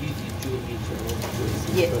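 Two slices of bread shallow-frying in hot oil in a pan, sizzling and bubbling, over a low steady hum.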